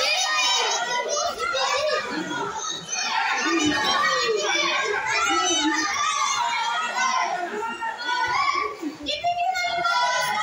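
Many children's voices shouting and calling over one another without a pause, a steady hubbub of young spectators in a hall.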